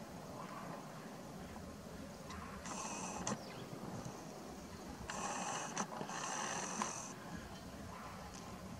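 Faint whirring of a camcorder's zoom lens motor in three short bursts, with a few small clicks, as the lens zooms and refocuses.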